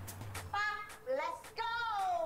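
A very high-pitched voice calling out in a sing-song way in short phrases, its pitch gliding up and down, starting about half a second in as a music track dies away.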